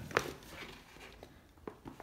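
Faint handling noise from a bike seat pack with a card tag being lifted and held up. There is one soft click just after the start and a few fainter ticks and rustles near the end.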